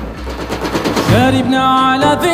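A rapid drum roll, then about a second in a male singer's voice glides up and holds a long, steady note.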